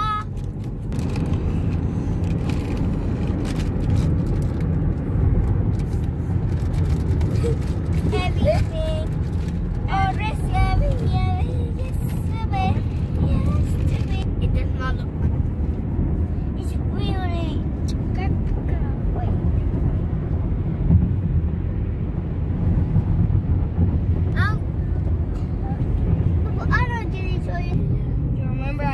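Steady road and engine noise inside a Chevrolet car's cabin while driving at highway speed, with faint voices now and then.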